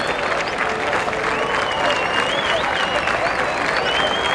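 Crowd applauding and cheering steadily, with thin whistles sliding up and down over the clapping.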